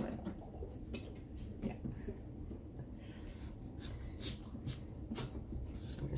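A kitchen knife cutting and scraping an onion on a soft cutting board: a string of faint, irregular scratchy cuts.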